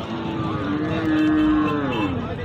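Cattle lowing: one long moo that holds a steady pitch, grows louder about a second in, and drops in pitch as it ends.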